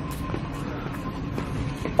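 Steady low background noise of a large store heard while walking through an aisle, with a faint thin steady tone in the first half that fades out about a second in.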